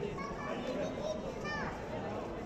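Indistinct chatter of many overlapping voices, children's among them, with one child's higher-pitched call standing out about one and a half seconds in.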